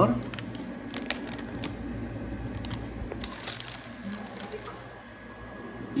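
Zip-top plastic bag of green coffee beans being handled: crinkling with a few sharp clicks in the first two seconds and again about three seconds in, over a low steady hum.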